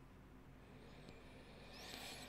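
Near silence: room tone with a faint low hum, and a brief faint hiss near the end.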